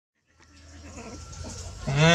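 A low background hum fades in from silence, then a hungry stray kitten starts a loud meow near the end.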